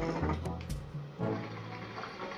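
Background music with a steady beat, over the bubbling of water in a shisha base as smoke is drawn through the hose.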